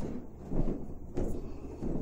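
Soft footsteps on carpet, a few muffled thuds about 0.7 s apart, over a low steady room hum.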